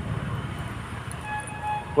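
Steady low rumble of road traffic, with a few short, faint toots of a vehicle horn at one pitch midway through.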